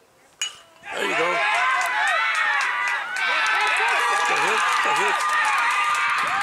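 A baseball bat hits the ball with a single sharp crack about half a second in. Almost at once a crowd of spectators bursts into loud overlapping yelling and cheering, with scattered claps, which carries on through to the end.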